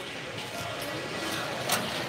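Reverberant background noise of a large exhibition hall while stands are being built, with faint distant voices and a single sharp knock about three-quarters of the way through.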